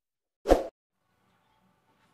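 One short pop about half a second in, lasting about a quarter second: an edited-in sound effect on the intro title graphic.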